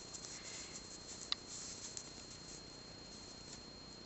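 Faint rustling and scratching of hands handling yarn and a crocheted piece, with one small sharp click a little over a second in.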